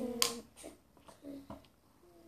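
A voice holding one steady note breaks off about half a second in, with a single sharp click at about the same moment. This is followed by a few faint taps and knocks of foam alphabet letters being handled on the floor.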